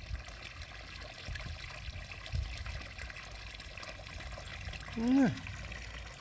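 Steady trickle of water in a garden pond, with low rumbles underneath. A short voiced sound near the end is the loudest moment.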